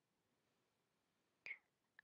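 Near silence, broken once by a single short, sharp click about a second and a half in.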